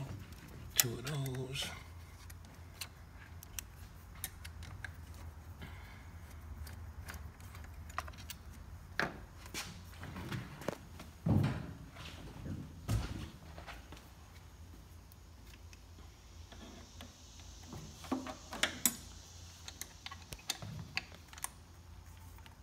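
Scattered light metallic clicks and knocks of a T-handle Allen key and fuel-rail hardware being worked loose on an engine's intake manifold, with a few louder knocks about halfway through. A low steady hum runs underneath.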